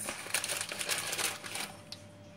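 A crinkling, crackling rustle of something being handled close to the microphone, lasting about a second and a half and then stopping.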